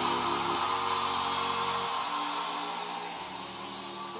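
Church organ or keyboard holding sustained chords, changing chord twice, over an even wash of congregation noise; the whole slowly dies down.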